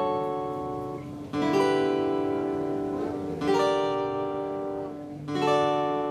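Acoustic guitar playing full chords, struck about every two seconds and each left to ring out and fade.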